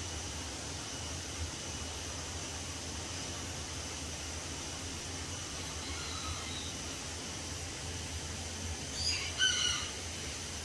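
Steady outdoor background noise with a low hum and a thin, constant high-pitched whine. A short high call comes twice in quick succession about nine seconds in, the loudest sound here, with a fainter one about six seconds in.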